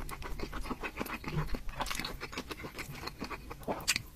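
Close-miked mouth sounds of a person chewing soft dumplings: a quick, uneven run of wet clicks, with a bite into another dumpling near the end.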